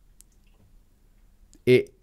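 Near silence: a pause in a man's speech with one faint click early on, then his voice resumes near the end.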